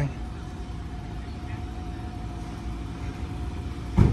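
A motor vehicle idling: a steady low rumble with a faint steady hum that stops shortly before the end.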